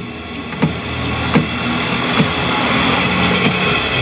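Plastic inside door handle of an Opel Corsa B clicking a few times in the first couple of seconds as its lever is worked. Under it runs a steady mechanical hum, like an engine running, which swells near the end.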